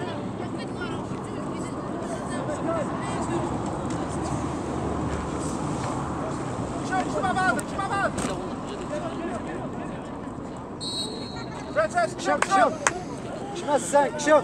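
Voices calling out on a football pitch over a steady outdoor background noise, with short shouts about seven seconds in and a louder run of shouts near the end.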